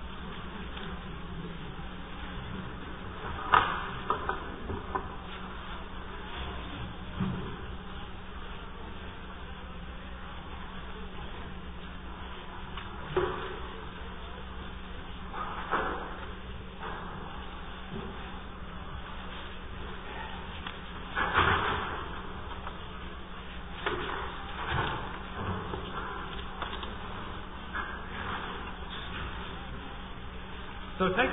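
Room tone of a lecture-hall recording: a steady, buzzy low electrical hum, broken every few seconds by short rustles and bumps from an audience moving about.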